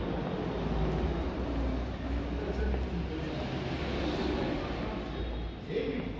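Indistinct voices over a low, steady rumble.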